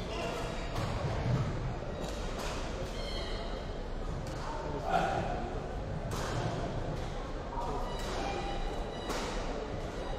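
Badminton rally in a large hall: rackets strike the shuttlecock in a string of sharp hits, with short high squeaks of shoes on the court between them and voices in the background.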